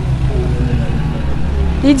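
Steady low rumble of outdoor background noise under faint distant voices, during a pause in talk; a woman starts speaking again near the end.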